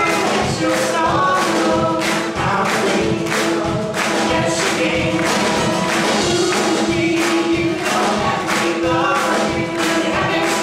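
Live folk-rock song: acoustic guitar and singing over a steady beat of about two strokes a second.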